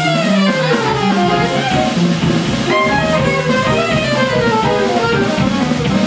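Small jazz combo playing live: saxophone running through falling melodic phrases over piano chords, guitar and drums.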